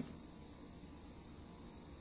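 Faint, steady chirring of crickets.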